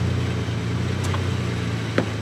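Dodge Ram van's engine idling steadily, a low even hum, with a faint click about halfway through.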